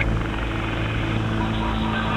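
Steady low electrical hum and hiss on a recorded dispatch radio channel between transmissions, with a brief faint tone in the middle.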